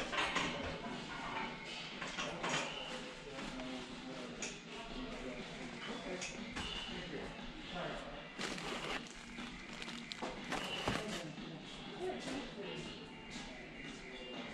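Big-box store ambience: faint, indistinct voices of other people with scattered small knocks and clatter, echoing in a large hall.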